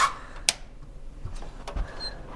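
A single sharp click about half a second in, then quiet room tone with a few faint small knocks.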